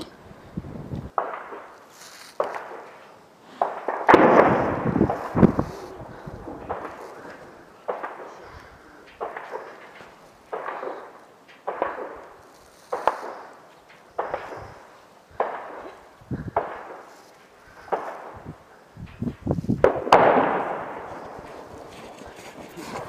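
Distant gunfire: a steady run of single sharp shots about once every second or so, each trailing off in an echo, with heavier reports around four seconds in and again near the end.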